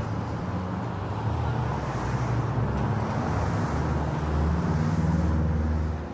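Road traffic on a city street: vehicle engines humming and tyre noise, growing louder toward the end as a vehicle comes closer.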